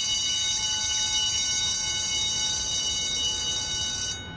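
Electric school bell ringing continuously, a dense metallic ring with fast rattling from the clapper.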